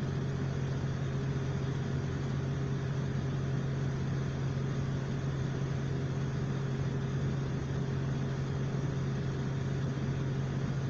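Class 175 diesel multiple unit running at steady speed, heard inside the passenger saloon: the underfloor Cummins diesel engine holds one constant low note over even wheel-and-rail rumble.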